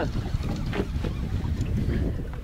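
Wind rumbling steadily on the microphone on an open boat deck over choppy water, with a few faint clicks about a second in.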